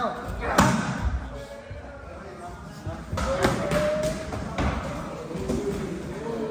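Muay Thai strikes smacking into Thai pads: one loud smack about half a second in, then a few more from about three seconds on, with a weaker one past four and a half seconds, echoing in a large gym.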